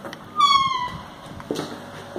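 A wooden interior door's hinge giving one short, high squeal that falls in pitch, followed about a second later by a knock as the door meets its frame.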